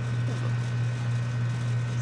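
A steady low hum, with a faint steady high tone above it.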